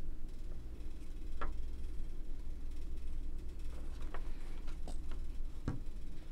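Leica CL camera being handled in the hands, giving a few small faint clicks and knocks spread over the seconds, over a steady low hum.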